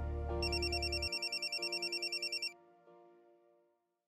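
A mobile phone ringing with a fast, warbling electronic trill for about two seconds, over soft background music that fades away.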